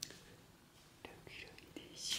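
Near silence: a sharp click at the start, then a few faint taps and brief soft hisses.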